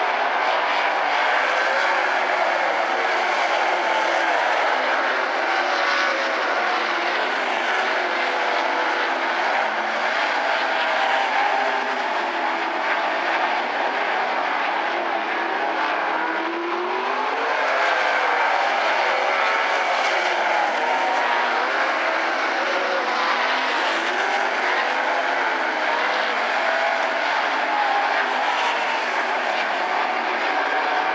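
A field of 360 sprint cars racing on a dirt oval. Their 360-cubic-inch V8 engines run continuously, several at once, their pitch rising and falling as the cars accelerate off and lift into the corners.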